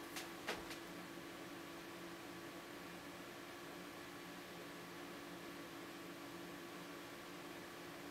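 Steady hiss and low hum of a running desktop PC's fans, with a couple of faint clicks in the first second.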